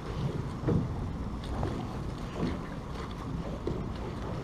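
Wind noise on the microphone over water lapping against a small boat's hull, with a few soft slaps about a second apart.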